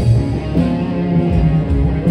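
Live rock band playing an instrumental passage: electric guitar over bass and drums.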